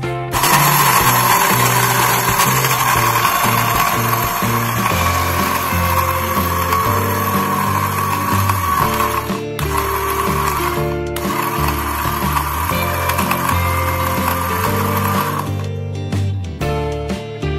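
Electric kitchen blender grinding lumps of hardened cement into powder: the motor starts a moment in, cuts out briefly twice around the middle, and stops just before the end.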